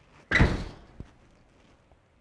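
A door slams shut once, the bang ringing briefly in the room, followed by a faint click.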